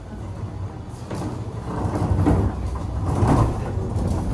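OTIS hydraulic elevator doors sliding open, and a wheeled plastic bin cart rolling over the floor and into the car with an uneven low rumble that grows louder about a second in.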